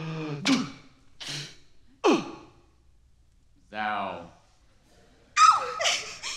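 Actors' voices making a string of invented noises one after another as an imaginary ball is passed round in a drama warm-up game: short breathy gasps, a falling whoop about two seconds in, a low voiced sound near four seconds, and a loud shrill cry near the end.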